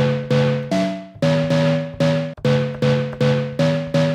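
Short chopped chord stabs from an old-school sample, played from a keyboard in a quick rhythm of about three hits a second. Each chord starts sharply and fades before the next, and the run shifts between a few chords.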